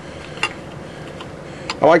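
Three light metallic ticks of a three-quarter-inch box-end wrench on the hex of a sensor being worked loose from an engine's water pump, over a faint hiss.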